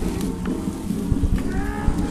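Music with long held low notes.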